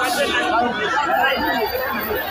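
Crowd of people talking over one another, many voices at once with no single voice standing out.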